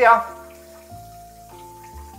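Soft background music with held notes that step to a new pitch about once a second. Under it, a faint steady hiss of the electronic bidet toilet's wash nozzle spraying water at its highest pressure setting.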